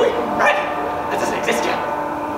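A man making short, dog-like yelps in an impression of Scooby-Doo's voice, twice.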